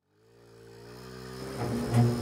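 A motorcycle engine running, fading in from silence and growing steadily louder, its pitch rising slightly.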